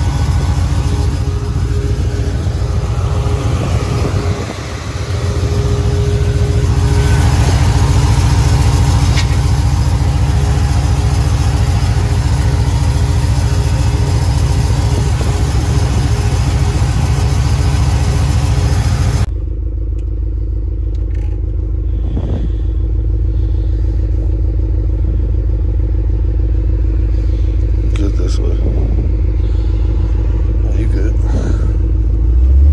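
Supercharged Chevy C10 short-bed pickup's engine running steadily, heard from outside the truck. About two-thirds in it changes abruptly to a deeper, muffled rumble heard from inside the cab while the truck drives.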